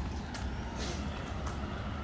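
Outdoor street ambience: a steady low rumble, with a few faint taps about half a second apart.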